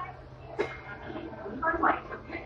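Steady low hum of a Hong Kong Light Rail car standing at a stop, with a click about half a second in and a short burst of indistinct sound near the end.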